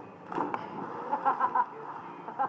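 A person's body hitting the water of a swimming pool with a splash about half a second in, followed by short bursts of voices.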